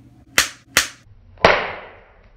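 Tortillas smacking against a face: three sharp slaps, the last the loudest with a short rushing tail that dies away.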